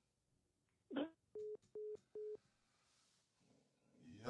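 Phone call-ended tone: three short, evenly spaced beeps at one pitch, the sign that the caller has hung up.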